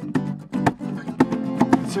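Acoustic guitar strumming a steady chord pattern inside a car, with one sung word right at the end.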